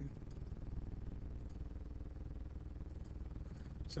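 Steady low hum of background noise, with no other distinct sound.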